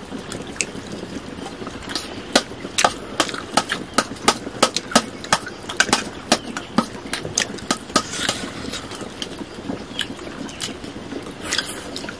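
Wet mouth clicks and lip smacks of someone chewing food eaten by hand, a quick irregular series of sharp clicks that comes thickest through the middle and thins out toward the end.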